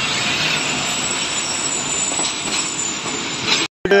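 Pakistan Railways passenger coaches rolling past close by: a steady rushing noise of wheels on rails, with a faint high squeal. It cuts off suddenly near the end.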